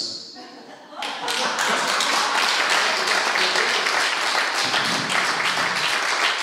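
Audience applauding with a dense, steady clatter of hand claps, starting about a second in.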